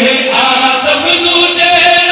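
Men chanting a devotional Urdu qasida into microphones over a PA system, in long held, wavering sung notes without instruments.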